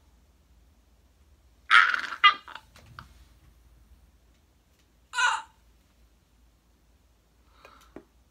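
A girl's excited wordless vocal outbursts: a loud short squeal-like burst about two seconds in, then a shorter breathy one about five seconds in, with quiet between.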